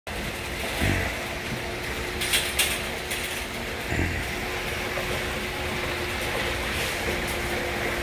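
Heavy water gushing out of an overwhelmed rain downspout and splashing, a steady rushing noise after a downpour. A faint steady hum runs underneath, with two sharp clicks about a third of the way in.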